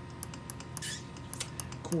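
Homemade magnetic wheel spinning, with rapid, uneven clicking from its rotating parts and switching contact over a steady low hum.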